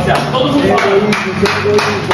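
Hand claps, about half a dozen at an irregular pace, over men's voices talking.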